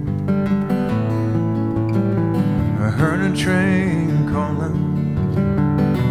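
Acoustic guitar strummed and picked in a steady accompaniment, with a brief sung vocal line a little past halfway.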